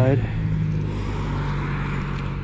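A steady low mechanical hum with a faint rushing noise over it, like distant road traffic, after the last syllable of a spoken word.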